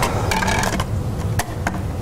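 Handling clicks and scrapes as a scratched CD is put into a CD reader on a table, scattered irregularly over a low steady hum.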